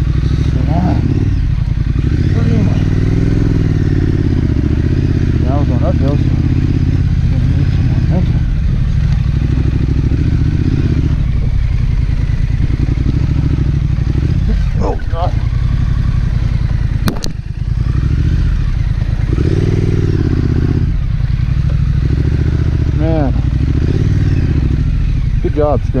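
2019 Triumph Scrambler's parallel-twin engine running while riding a rough dirt track, its pitch rising and falling as the throttle opens and closes. A single sharp click about two-thirds of the way through.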